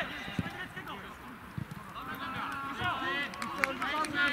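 Footballers calling out to each other across a grass pitch, the shouts rising in the second half, with a few short knocks of play in between.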